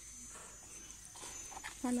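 Quiet garden ambience with a faint, steady high-pitched tone, then a woman's voice saying a word near the end.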